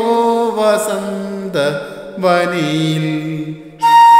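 A man singing a slow, ornamented phrase of the melody unaccompanied, in short phrases with wavering pitch slides in Carnatic style. A bamboo flute comes in with a clear held note near the end.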